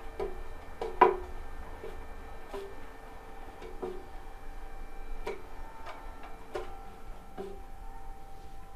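Silicone pastry brush tapping and scraping against the sides of a metal loaf tin while greasing it with oil: irregular light taps, roughly one a second, each with a short tinny ring, the loudest about a second in. Faint steady tones hum underneath.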